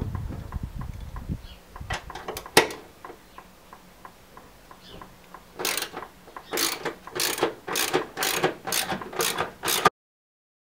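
Socket ratchet wrench working the bolts of a van seat base. A few knocks and clatters come first, then a steady run of short ratcheting strokes, about two to three a second, through the second half. The sound cuts off abruptly just before the end.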